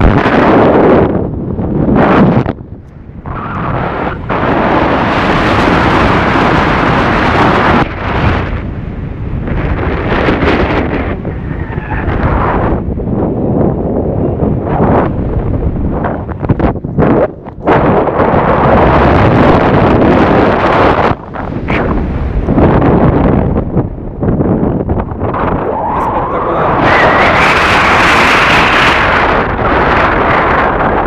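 Wind rushing over a phone's microphone during a paraglider flight, loud and gusting, with a few short lulls.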